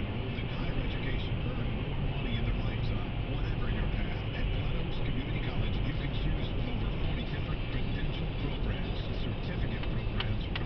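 Steady road and engine noise inside a moving car, with a car radio playing faintly underneath.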